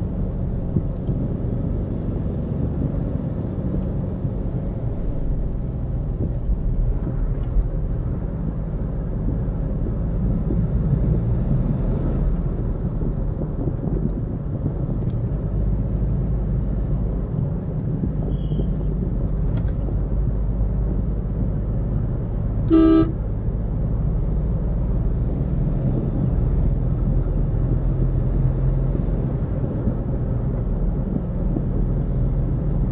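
Steady low rumble of road and engine noise inside a moving car's cabin. About three-quarters of the way through, a car horn gives one short toot.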